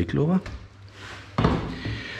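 A short scraping noise about one and a half seconds in, from a knife cutting pork shoulder meat on a cutting board.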